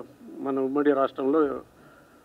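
A man speaking a short phrase into a handheld microphone.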